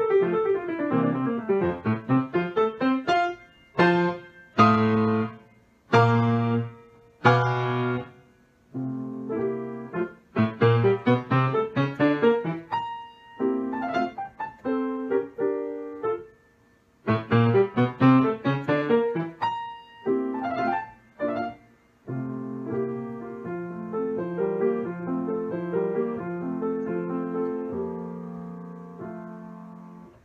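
Solo grand piano playing a classical piece: a quick falling run, then loud, detached chords separated by short silences, then fast running passages, settling near the end into a softer, steady repeated figure.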